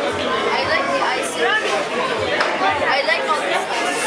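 Many voices chattering and talking over one another, children among them, with no one voice standing out.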